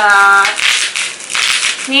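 Plastic bubble wrap crinkling and rustling in bursts as a bottle is unwrapped by hand.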